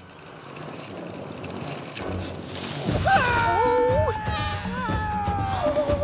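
A swelling hiss for about three seconds, then a cartoon animal character's long, whining cry that wobbles and bends in pitch and dips lower near the end.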